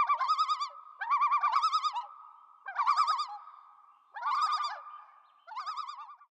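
Common loon giving its tremolo call, a quavering, laughing call repeated about five times, each phrase lasting under a second.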